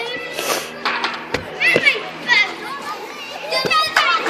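Children shouting and calling out at play, faint and distant, in short high-pitched cries. One sharp knock sounds about a second and a half in.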